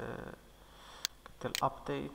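A man speaking Moroccan Arabic trails off into a short pause with a faint breath, then starts speaking again.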